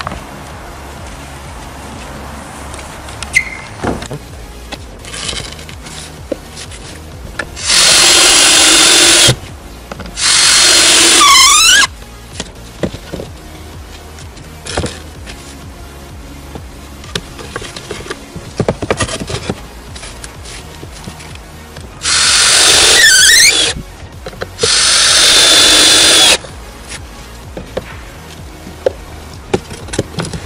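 Ryobi cordless drill-driver driving screws into larch roof boards: four runs of about a second and a half each, in two pairs, the motor's pitch dropping at the end of two of them as the screw seats. Scattered light knocks of boards being handled and faint background music fill the gaps.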